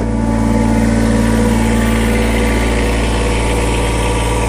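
Kubota BX2380 subcompact tractor's three-cylinder diesel engine idling steadily.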